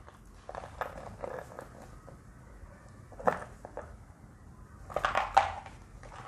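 Small cardboard box being turned over in the hands: light rubbing and tapping of fingers on the card, with a sharper knock about halfway through and a few louder taps near the end.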